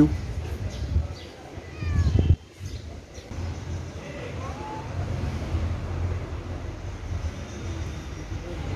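Steady low rumble of distant road traffic, briefly louder about two seconds in before dropping off suddenly, with a few faint high chirps above it.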